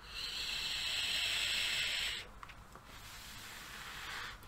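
A steady hiss lasting about two seconds as a vape is drawn on: air pulled through the Captain X3S sub-ohm tank's airflow while the coil fires, on an iJoy Diamond PD270 box mod. It stops suddenly, and a faint exhale follows near the end.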